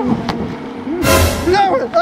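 Excited men's voices exclaiming and vocalising without clear words, with a short loud hissing burst about halfway through.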